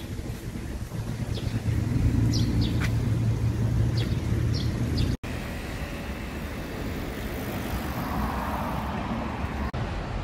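City street traffic: a vehicle rumbling past in the first half, broken off suddenly about five seconds in, then steadier traffic noise with another car swelling past near the end.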